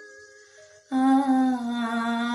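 A girl singing solo and unaccompanied. After a short breath pause, a little under a second in, she starts a long held note that stays almost level.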